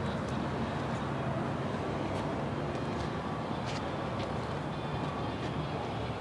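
Steady outdoor background hum with a few faint ticks and no distinct event.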